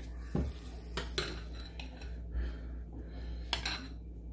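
Metal spoon clinking and scraping against a glass bowl as it scoops soft white cheese filling, in a few separate knocks.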